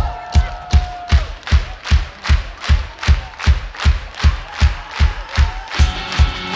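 Live band's steady drum beat, hard even hits about two and a half a second, over crowd noise as a song's intro. A held note sounds in the first second, and the full band comes in at the very end.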